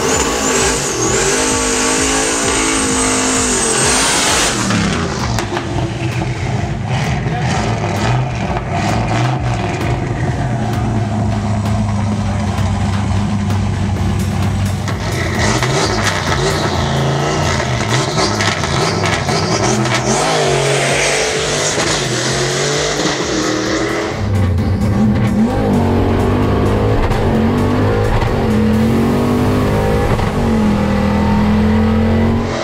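Turbocharged Fox-body Ford Mustang's stroker V8 revving and running at the drag strip, its pitch rising and falling in several separate stretches. A high whistle sits over the engine for the first four seconds.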